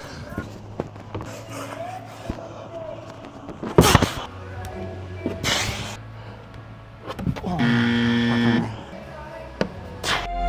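Dull thuds of a climber jumping and dropping off the wall onto bouldering-gym crash mats, the loudest about four seconds in, over a low steady hum. Near the end a pitched sound slides down and holds for about a second.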